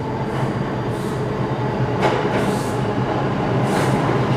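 New York City subway 2 train pulling into the station, a steady low running noise of the train on the rails, with brief louder rushes of noise about two seconds in and again near the end.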